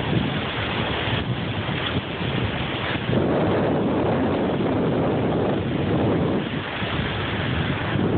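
Surf breaking and washing up the beach, mixed with wind buffeting the phone's microphone: a steady rush of noise that swells louder from about three seconds in to about five and a half.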